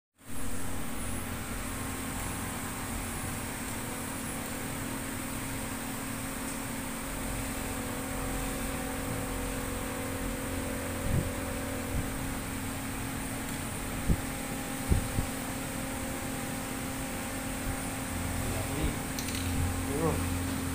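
Steady electrical hum over a fan-like hiss, with a faint high whine. A few light knocks and clicks fall in the second half.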